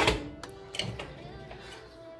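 A sharp metallic knock right at the start, a stainless-steel kettle being set down on the stove, over background music with long held notes.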